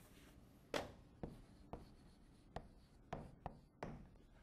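Chalk writing on a blackboard: a faint series of about seven short, sharp taps and scratches as the letters are put down.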